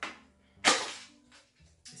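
A Pringles can being opened: one sharp, loud rip-like noise about two-thirds of a second in as the lid and foil seal come off, fading within a few tenths of a second, with a fainter one at the start.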